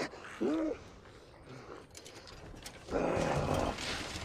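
A man's distressed vocal sounds: a short, wavering moan about half a second in, then a rough, rasping groan about a second long near the end.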